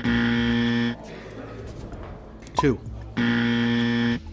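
Game-show wrong-answer buzzer, a flat, steady buzz of about a second, sounding at the start and again just over three seconds in, each time marking a wrong answer.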